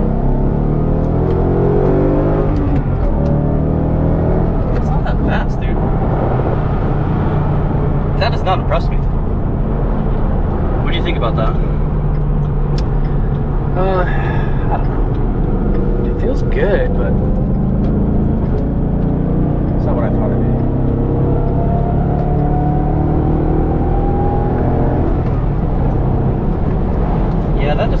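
Ford Mustang GT's 5.0-litre V8 heard from inside the cabin under hard acceleration, revs climbing over the first few seconds and again later on, then pulling steadily at highway speed.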